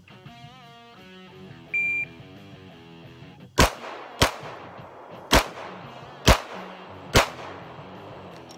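An electronic shot timer beeps once, then a pistol fires five shots, unevenly spaced over about three and a half seconds. Guitar background music plays throughout.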